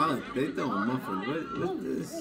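Overlapping voices of several people talking and calling out at once.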